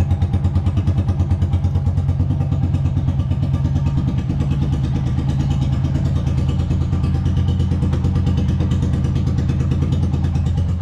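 Single-cylinder motorcycle engine idling steadily with an even, pulsing beat, several pulses a second, while warming up.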